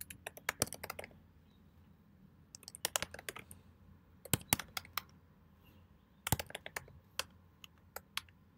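Typing on a computer keyboard, in four short runs of keystrokes with pauses between.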